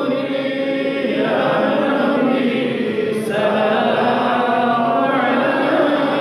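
Men's voices chanting together in unison without instruments, phrase after phrase: a devotional mawlid salutation to the Prophet.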